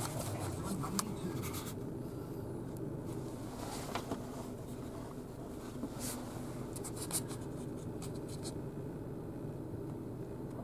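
Handling noise: the camera rubbing and scraping against cloth and paper as it is moved about, with a few sharp clicks, over a steady low hum.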